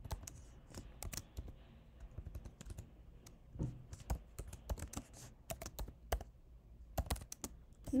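Typing on a computer keyboard: key clicks in uneven runs and pauses.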